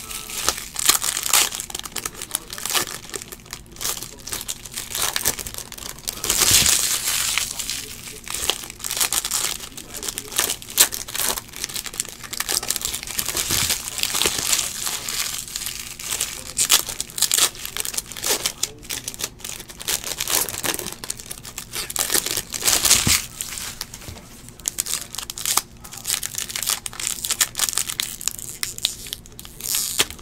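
Foil wrappers of Bowman baseball card packs crinkling and tearing as the packs are ripped open and the cards handled, in a continuous run of crackles.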